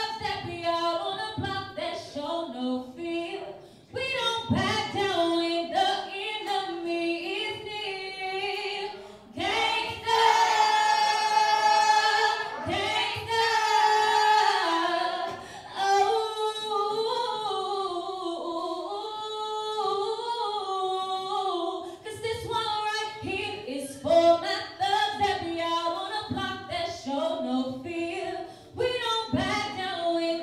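A woman singing solo into a microphone with no backing music, holding long notes in the middle of the passage.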